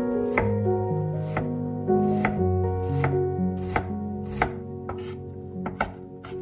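Chef's knife chopping peeled garlic cloves on a wooden cutting board, about two sharp knocks a second, with a quick cluster of strokes near the end.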